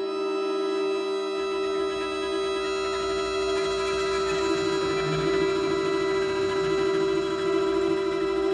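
Sustained, drone-like contemporary chamber music for alto saxophone, cello, accordion and electronics: one steady held note with many overtones, a low rumble joining a little over a second in, and the sound growing denser towards the middle.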